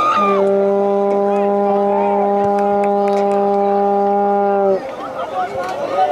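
A horn sounds one long steady note at a single low pitch for about four and a half seconds, then cuts off.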